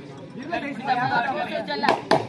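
Overlapping voices of players and spectators chattering and calling out during a kabaddi raid, with one sharp smack near the end.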